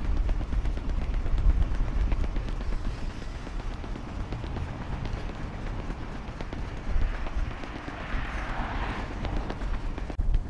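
A person running, footsteps beating over a steady low rumble, with a brief rushing noise about eight seconds in.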